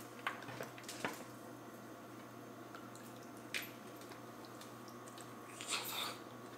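Quiet handling sounds of a hard-boiled egg being cracked and peeled: a few faint clicks and squishy shell noises, with a short sharp crackle about three and a half seconds in and a brief hiss near the end.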